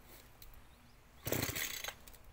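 Baumr Ag SX72 two-stroke chainsaw giving one short loud burst, well under a second long, a little past the middle, over a faint low background.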